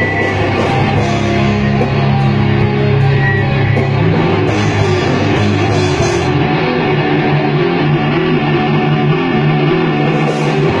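A metal band playing live: heavily distorted electric guitars, bass guitar and drum kit, with no vocals. The bright top end drops out about six seconds in.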